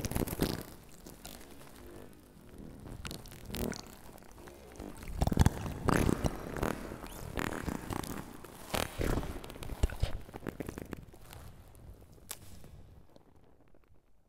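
Experimental electronic noise music played live on a microphone and pad controller: irregular bursts of rough noise and sharp clicks with quieter gaps between them, thinning out to near quiet near the end.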